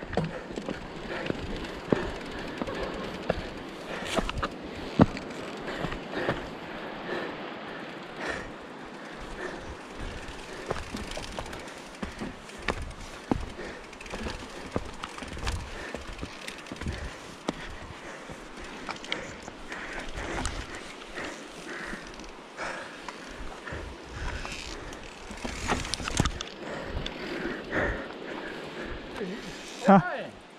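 Mountain bike rolling over rocky dirt singletrack: a steady rush of knobby tyres on dirt and rock, broken by frequent sharp clicks and knocks as the bike rattles over rocks and bumps.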